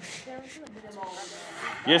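Only speech: faint voices talking in the background, then a clear spoken "yes" near the end.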